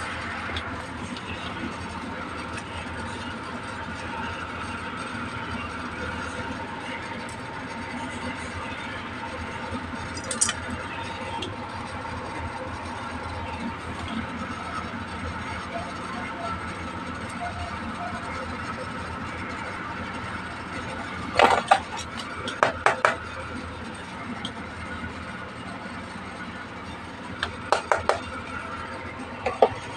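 Hard plastic toy pieces clicking and tapping as they are handled, with a single click about ten seconds in, a quick cluster of sharp clicks about two-thirds of the way through, and a few more near the end. A steady background hum runs underneath.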